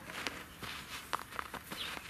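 Cheetah cubs scuffling on dry dirt and grass as they wrestle over and bite a stuffed toy: irregular rustles and small crackles, several a second.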